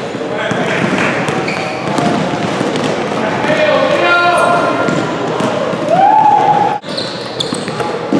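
Live sound of a basketball game on a gym court: the ball bouncing on the hardwood floor amid players' shouts and calls, with a held call about six seconds in. The sound cuts out for an instant just before seven seconds.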